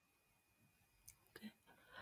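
Near silence between two speakers' turns, with one faint short sound about one and a half seconds in.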